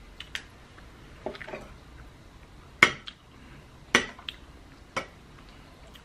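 A metal spoon clinking against a small bowl while food is scooped out: four or five sharp taps a second or so apart, the loudest just before and just after the middle.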